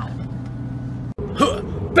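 Steady low drone of a van's engine and road noise heard inside the cabin while driving. Just after a second in, the sound cuts out for an instant and a short burst of laughter follows.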